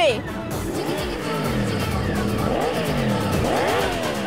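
Cartoon motorcycle engine sound effect, revving in several falling sweeps as the bike speeds off, over background music.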